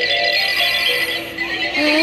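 Music with singing played by a Killer Klowns Slim Side Stepper animatronic clown doll.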